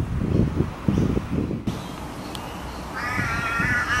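A drawn-out, even-pitched bird call about three seconds in, lasting about a second, over a low rumble of wind on the microphone.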